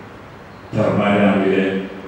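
A man's voice, starting after a brief pause.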